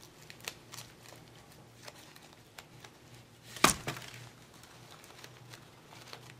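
Soft rustling and small clicks of a silk flower being pulled apart by hand, its fabric petals coming off the stem, with one louder, sharper click a little past halfway.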